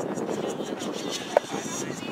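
Indistinct chatter of people's voices near the camera, with one short sharp sound about a second and a half in.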